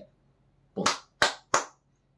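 Three quick, sharp hand claps, about a third of a second apart.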